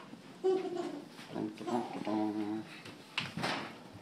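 Wordless voice sounds: a few short pitched calls and a longer held tone, then a brief breathy noise a little after three seconds in.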